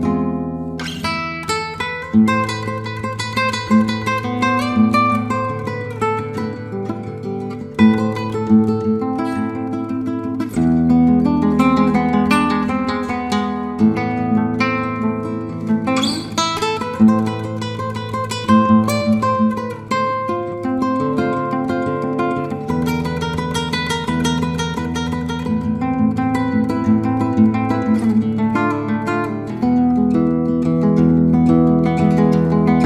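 Solo acoustic guitar played fingerstyle: quick plucked melody and arpeggio notes over ringing bass notes that shift every several seconds, broken by a few sharp strummed accents.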